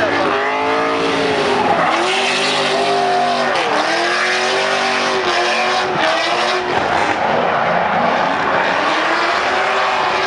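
Drift car's engine revving hard while its rear tyres spin and screech in a sideways slide, with tyre noise throughout. The engine pitch rises and falls over and over as the throttle is worked through the drift.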